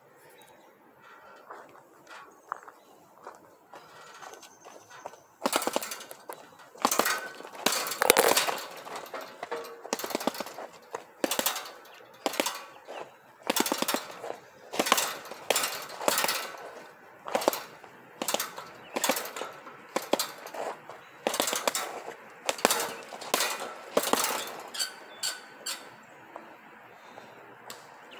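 Metal frame of a hanging punching bag knocking and rattling at a bolted joint as the bag is hit and shakes the whole stand. The sharp knocks start about five seconds in and come in a rough rhythm of one to two a second.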